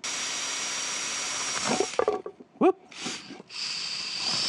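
Cordless drill with a twist bit boring through the epoxy-coated face of a small wooden clock box, running steadily with a high whine for about two seconds, then stopping.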